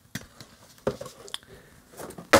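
A few light knocks and scuffs from a cardboard shipping box being handled and set aside.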